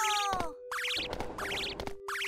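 Cartoon sound effect: a springy boing whose pitch wobbles upward, repeated about every 0.8 seconds three times, over a steady held tone.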